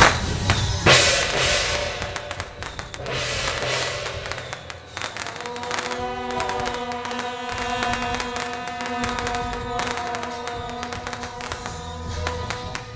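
Temple-procession band music: a loud crash at the start and another just under a second in, dense rapid crackling and percussion throughout, and a held brass note coming in about halfway through.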